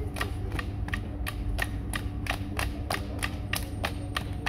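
A group clapping their hands in a steady rhythm, about three claps a second, over a steady low hum.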